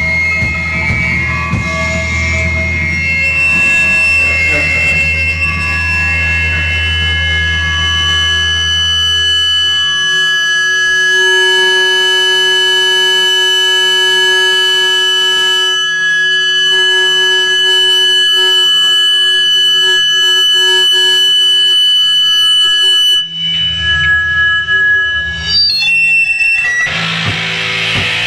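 Noise-rock electric guitars through effects holding a loud drone of steady, high-pitched tones, with a low rumble underneath that drops out about a third of the way in. Near the end the drone cuts out and stutters, then guitars come back in, strummed hard.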